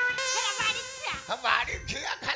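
A buzzy, twangy note from an amplified plucked string instrument is held for about a second and fades, ending a short instrumental phrase. Then people's voices take over.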